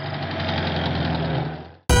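Car engine running steadily at idle, fading out near the end, where a loud, bright music jingle cuts in.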